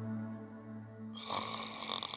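Background music holding a steady low note, with a loud noisy snore-like breath coming in a little after a second and lasting about a second.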